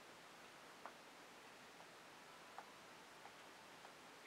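Near silence, broken by a few faint, short ticks as a squeeze bottle's tip dabs paint dots onto a canvas.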